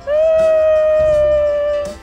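A woman's voice holding one long high note that sags slightly in pitch just before it stops, over background music with a steady low beat.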